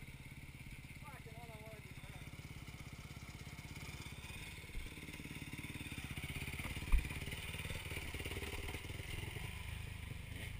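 Off-road dirt bike engines running at a steady, evenly pulsing beat, growing a little louder from about four seconds in, with a single sharp knock about seven seconds in.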